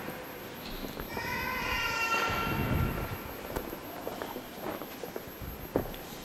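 Quiet church room sounds of people moving during communion: shuffling footsteps and a few sharp knocks, with a brief squeaky pitched tone lasting about a second, starting about a second in.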